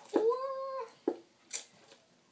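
A household pet's single short cry, its pitch rising and then falling, followed by a couple of light clicks.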